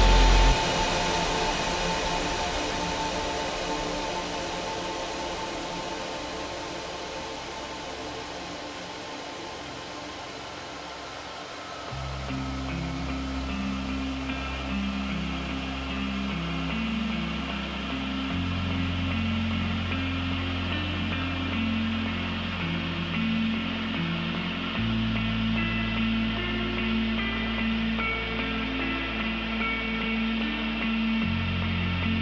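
A music track in a breakdown. The full mix drops out about half a second in, leaving a slowly fading sustained pad. Around twelve seconds in, a deep held bass note and a repeating melodic figure enter, and the bass steps to a new note twice.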